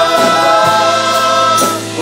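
Church choir singing a hymn in long held notes, accompanied by guitars and mandolins; the sound dips briefly near the end as one phrase ends and the next begins.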